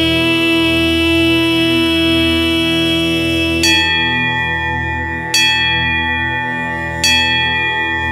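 Devotional music: a long held note over a low drone, then three bell strikes about a second and a half apart, each left ringing.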